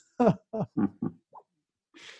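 A man laughing in a run of about five short chuckles that grow fainter and die away, as at the punchline of an anecdote.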